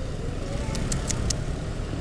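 Road and wind noise of a Honda Vario scooter being ridden, with its engine running steadily underneath. A few short, sharp high ticks come in around the middle.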